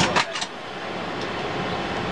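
Telephone handset clacking a few times in quick succession as it is set back in its cradle on a control panel, followed by the steady background hum of a submarine's ventilation and machinery.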